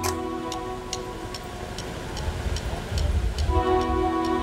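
Electronic keyboard holding a sustained chord over a steady ticking beat of about two ticks a second; the chord fades out a little over a second in and comes back near the end, with a low rumble underneath in the second half.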